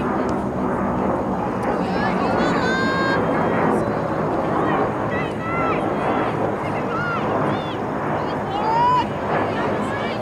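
Players and sideline spectators at a youth soccer match shouting short calls, the loudest near the end, over a steady low rumble of outdoor noise.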